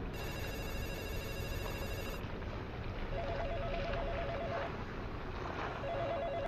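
Telephone ringing with an electronic warbling trill, one ring starting about three seconds in and a second near the end, over a steady background hiss.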